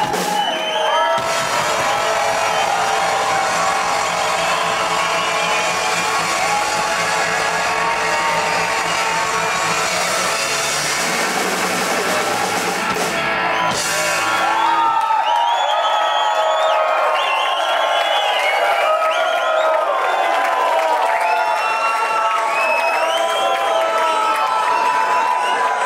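Live dub band playing loud with heavy bass and drums. About fifteen seconds in, the bass and drums drop out, and the crowd goes on whooping and shouting over the remaining high-pitched sounds.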